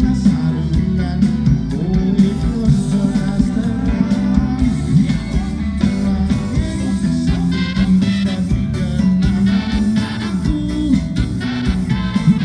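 A live band playing through a concert sound system, with guitars and drums, and a voice singing at times.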